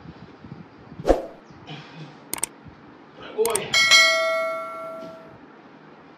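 Subscribe-button sound effect: two quick clicks, then a bright bell ding that rings out and fades over about a second and a half. Just before the ding, a man lets out a short strained shout of "Oi!" from the effort of the leg raises.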